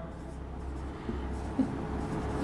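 Faint sound of a marker pen writing numbers on a whiteboard, over a low steady room hum.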